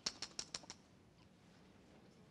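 A quick run of about six faint, sharp clicks in the first second, then near quiet.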